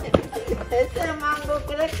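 A person's voice going up and down in pitch without clear words, over background music.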